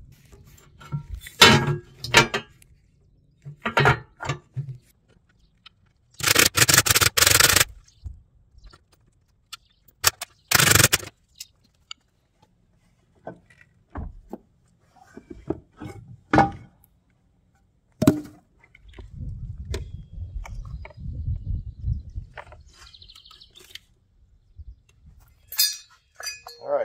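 Hands-on work with metal hardware and tools: scattered knocks, clinks and scraping, with two longer loud noisy bursts about six and ten seconds in, as a battery tray and battery box are fitted to a trailer tongue.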